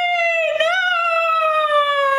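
A person's long, high-pitched vocal cry, held and sliding slowly down in pitch, with a brief break about half a second in.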